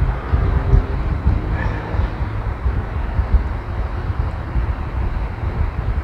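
Uneven low rumbling background noise, with no speech.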